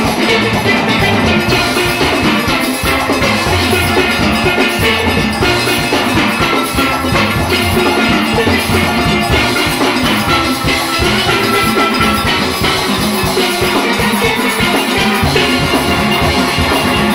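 A full steel orchestra playing live: many steelpans sounding a dense, fast-moving tune together over a driving drum and percussion rhythm section, loud and steady.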